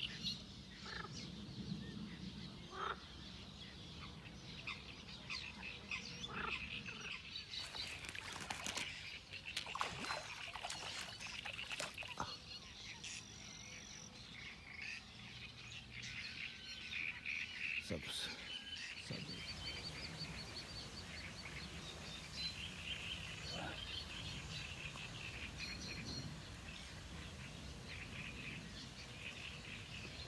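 Small birds chirping and singing continually in the reeds around a pond. A few sharp clicks come in the middle, and there is a single louder knock near the two-thirds mark.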